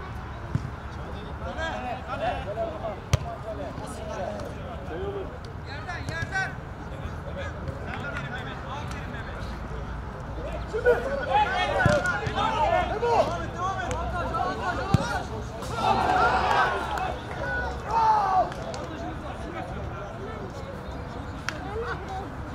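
Players shouting during an amateur football match on artificial turf, over a steady outdoor rumble, with a few sharp thuds of the ball being kicked. The shouting rises in two spells, around the middle and again about three-quarters of the way through.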